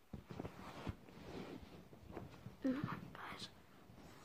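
A boy's breathy whispering and close rustling right at the phone's microphone, with a short hummed "mm" about two and a half seconds in.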